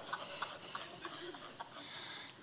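Faint, soft chuckling that fades away, with a quiet murmur of voices.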